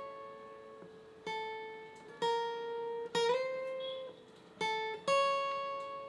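Acoustic guitar playing a slow lead line of single notes, about five of them, each plucked and left to ring. About three seconds in, one note slides up in pitch.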